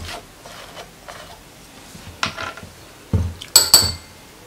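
A metal spoon clinking twice against a glass bowl near the end, each strike ringing briefly. Before it come softer handling noises as a plastic oil bottle is uncapped.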